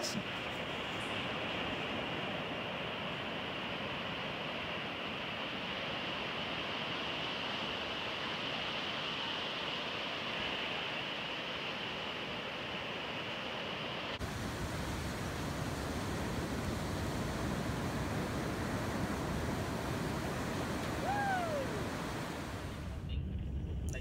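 Surf washing up on a pebble beach, a steady rush of breaking waves. About halfway through, the sound cuts to a deeper, heavier rush, and a brief falling whistle comes near the end.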